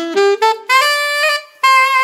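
Alto saxophone playing a quick rising line of separate notes, with a short break a little past halfway, then a higher held note near the end: a bluesy R&B lick.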